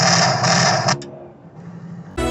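Simulated machine-gun fire from an interactive deck-gun display, a rapid rattle that cuts off suddenly about a second in.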